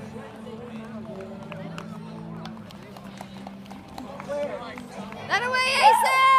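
Ballpark celebration: a low murmur of voices and a steady low hum, then near the end one loud, high-pitched celebratory shout that rises and falls over about a second.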